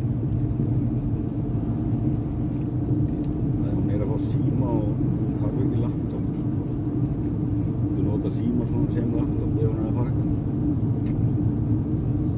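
Steady low road and engine rumble inside the cabin of a car moving at highway speed.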